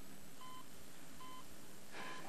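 Hospital patient monitor beeping: short, faint, evenly spaced single-pitched beeps, a little more than one a second.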